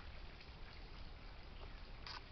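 Faint, steady outdoor background noise with a low rumble underneath and no distinct sound events.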